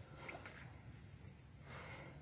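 Faint, steady chirping of night crickets, with a couple of soft brief handling noises.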